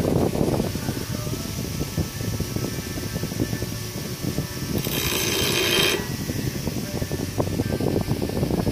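Bench grinder with a wire wheel running, a steel head bolt held against the spinning wire brush to clean it, with a steady rattle throughout. About five seconds in there is a louder, harsher stretch of about a second as the bolt is pressed harder into the wheel.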